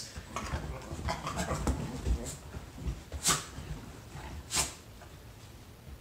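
Small white terrier making short dog noises: a cluster at first, then three short, sharp sounds about a second apart, quieter towards the end.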